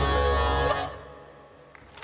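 A solo musician's live music ending on held final notes, which cut off sharply less than a second in, leaving only a faint fading tail.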